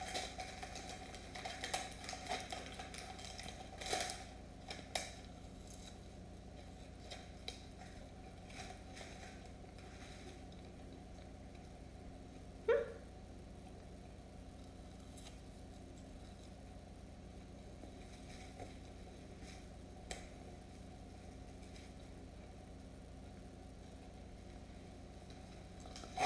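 Faint mouth and chewing sounds from eating a small candy, with soft clicks and crackles in the first few seconds over a steady low room hum; a brief rising tone sounds about halfway through.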